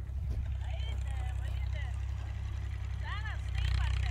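IMT 539 tractor's three-cylinder diesel engine, heard from a distance as a steady low drone while ploughing. A faint voice calls out from afar about a second in and again near three seconds.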